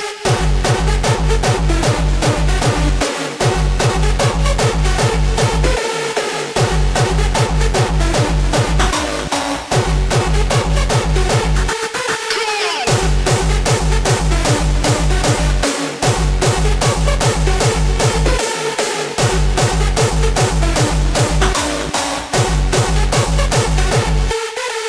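Hardstyle dance music played loud: a heavy, low kick drum at about two and a half beats a second under synth lines. The kick drops out briefly every few seconds, with a longer gap about halfway through.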